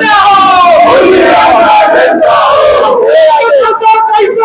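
A crowd of men shouting slogans together, loud and unbroken, many voices held in long drawn-out calls.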